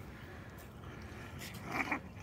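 A dog gives a short bark-like call near the end, over a faint steady background hiss.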